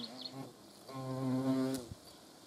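European hornet buzzing in flight close to the nest box entrance: a low, steady wingbeat buzz that fades out about half a second in, returns for about a second, and stops shortly before the end.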